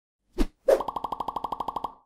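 Animated logo sound effect: two quick pops, then a fast even run of ticks, about thirteen a second, over a steady tone, stopping suddenly just before the end.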